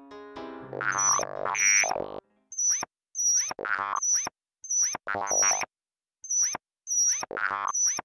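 Animated end-card sound effects: a short musical flourish, then springy cartoon boings in pairs, a short one and a longer one, with brief silences between, about one pair every two seconds.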